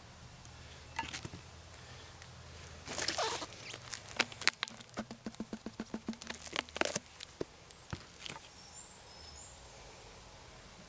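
Knocks, rustles and clicks of a gloved hand working at the mouth of a large glass jar, with a run of quick, even taps at about five a second in the middle. Faint bird chirps near the end.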